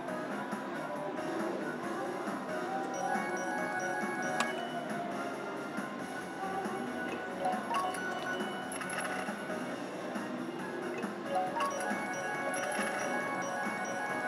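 Video slot machine playing its bonus-round music, with bell-like chimes as the reels spin and the win meter counts up.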